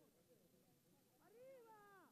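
A single short, high-pitched cry about a second and a half in, its pitch rising and then falling, over faint distant voices.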